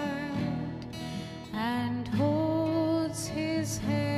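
A woman singing a ballad over guitar, her voice dipping briefly about one and a half seconds in before a new sung phrase begins.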